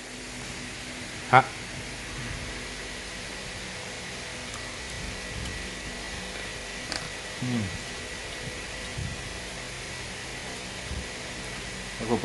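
A steady background hum with faint constant tones, of the kind a fan or air conditioner makes, with a sharp click about a second in and a short murmured sound a little past halfway.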